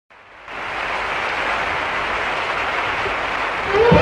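Audience applauding, starting suddenly and holding steady. Orchestral music starts up just before the end.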